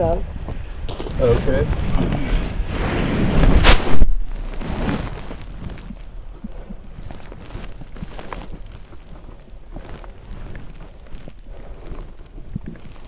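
Muffled voice and rustling handling noise on a covered body-camera microphone, building to a loud knock about four seconds in, then quieter rustling with faint clicks.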